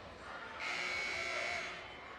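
Gymnasium scoreboard horn sounding one steady blast of about a second, marking the end of a timeout.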